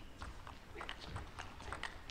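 Table tennis rally in match broadcast sound: a run of faint, sharp, irregular clicks as the ball bounces on the table and is struck by the bats.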